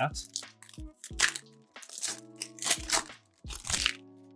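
Plastic foil wrapper of a trading-card pack crinkling and tearing as it is ripped open, in several short bursts of rustling, over steady background music.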